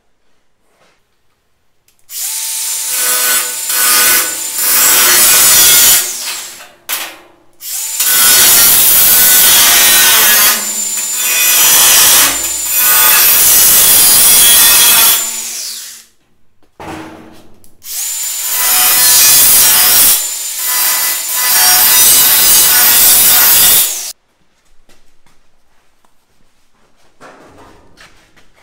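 DeWalt 20V cordless angle grinder with a 4-1/2" cut-off wheel cutting notches into steel sheet. It runs loud in about five passes of a few seconds each, with short pauses between them, and stops about 24 seconds in.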